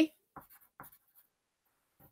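The last of a spoken name, then a few faint, short scratchy sounds in the first second or so, then near silence.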